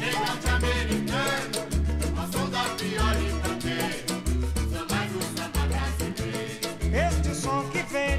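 Partido-alto samba played by a small samba group: a deep drum stroke about once every second and a quarter under busy hand percussion and plucked strings.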